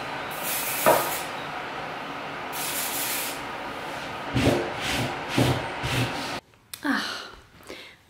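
Hand dusting and tidying: a cloth and cleaning spray hiss in two short bursts over a steady rustle, then several soft thumps as things are moved about. The sound cuts off abruptly about six and a half seconds in.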